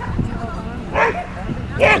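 Border collie barking while running, with one sharp bark about a second in and another near the end.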